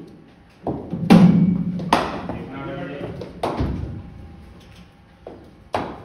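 Cricket ball knocks in an indoor practice net: a string of sharp knocks echoing in the hall, the loudest about a second in, with voices between them.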